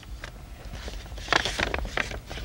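Paper envelope rustling as it is handled and opened, with a short run of quick crackles about a second and a half in.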